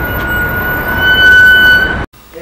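DAF DB250 double-decker bus pulling in close alongside, its engine rumbling under a steady high-pitched squeal that grows louder about a second in.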